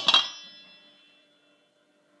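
A single clang as a glass measuring cup knocks against a stainless steel mixing bowl, the bowl ringing with a bell-like tone that fades away over about a second and a half.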